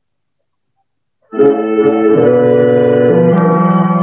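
A 1967 home recording of tenor saxophone and electronic flute playing together, heard as several long held notes at once that shift about every second. It starts abruptly about a second in, after silence.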